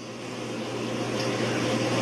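A steady low hum under a noise that grows steadily louder.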